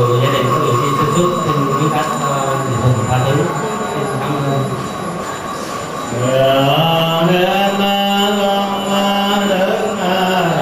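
Buddhist funeral chanting over a microphone: a voice recites in short changing phrases, then about six seconds in draws out one long held syllable that rises slightly and sinks again near the end.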